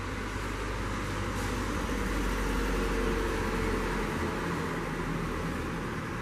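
Distant city road traffic: a steady rumble and hiss that swells a little in the middle and eases off near the end.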